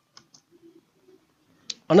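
A few soft clicks, the sharpest just before speech resumes, typical of a computer mouse being clicked to bring up the next line of a presentation slide.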